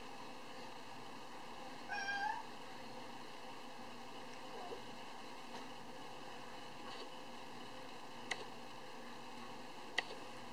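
A kitten meows once, a short call rising in pitch about two seconds in, with a faint lower call a few seconds later. A single sharp click follows near the end.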